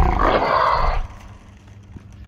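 A man's loud yell, about a second long, from a skater who has just fallen off his board.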